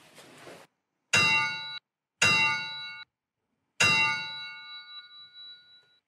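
A metallic bell struck three times, the same ringing tones each time. The first two strikes are cut off short, and the third is left ringing and fades out over about two seconds.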